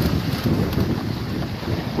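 Steady wind buffeting the microphone, mixed with water rushing along the hulls of a Nacra 20 beach catamaran sailing at speed.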